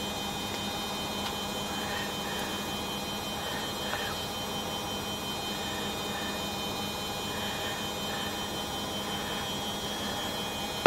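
Steady electrical hum and hiss, with a few faint, soft scrapes of a spatula in a glass mixing bowl as cake batter is scraped out into a baking tin.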